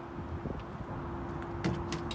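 Wind rumbling on the microphone, with a faint steady hum under it and a few light clicks.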